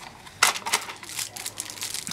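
Packaging crinkling and crackling as a retail box of football trading cards is handled and a wrapped card pack is taken out, with one sharp crack about half a second in.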